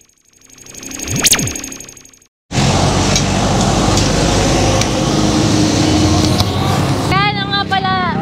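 A synthesized whoosh sound effect whose pitch sweeps down and back up as it swells and fades over the first two seconds. A short silence follows, then steady street noise with traffic. A woman starts talking near the end.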